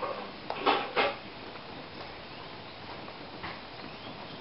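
Steady hiss of light rain falling, with a few brief knocks or clatters about half a second to a second in.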